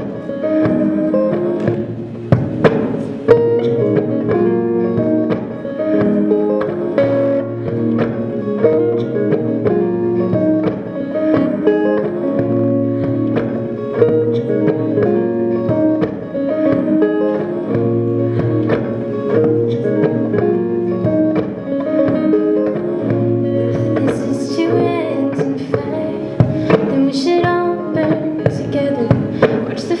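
Electric guitar played through a small amplifier, a repeating pattern of chords and picked notes layered with a loop pedal, with a bass figure that comes back every few seconds. A woman's voice starts singing at the very end.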